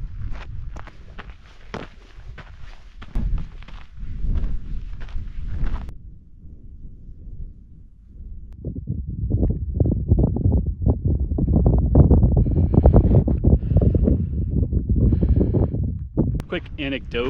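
Footsteps on rocky, gravelly ground at a steady walking pace, then an abrupt change about six seconds in to a louder, irregular low rumble of wind buffeting the microphone.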